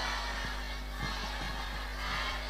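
Quiet background music under a steady low hum.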